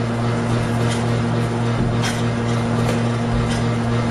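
A steady low hum, unchanging in level, with a few faint short high ticks over it.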